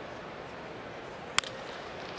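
Steady ballpark crowd murmur, cut about one and a half seconds in by a single sharp crack of a wooden baseball bat hitting a pitched ball for a ground ball.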